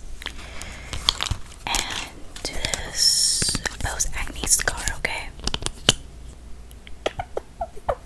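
Close-miked ASMR trigger sounds: a soft fluffy brush sweeping near the microphone with sharp little clicks, and a burst of high hiss about three seconds in. A run of short, squeaky chirps follows near the end.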